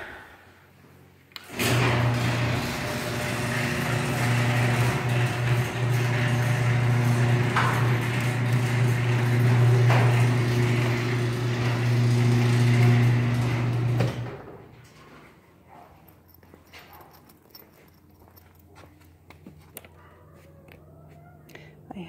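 Electric garage door opener raising the door: a loud, steady motor hum that starts suddenly and cuts off about twelve seconds later.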